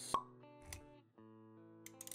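Animated intro sting: a sharp pop sound effect just after the start, a soft low thump under a second in, then sustained synthetic music notes.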